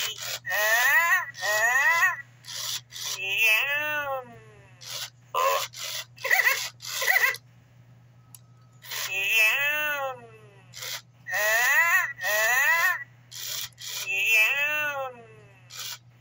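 A 1999 Autumn Furby talking in its high, warbling electronic Furbish voice, in short phrases with pauses between, as its tongue is pressed to feed it.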